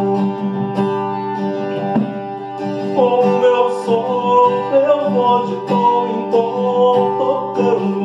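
Acoustic guitar strummed steadily. A man's voice joins about three seconds in, singing a melodic line over the chords.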